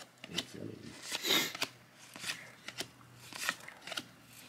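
A hand-held stack of cardboard baseball trading cards being flipped through, card sliding over card. There are several soft flicks and one longer scraping slide a little over a second in.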